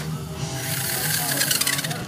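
Electric motor and gearbox of a radio-control truck chassis running, with a steady hum and rapid ratchet-like gear clicking that drops out for about half a second just after the start and then resumes.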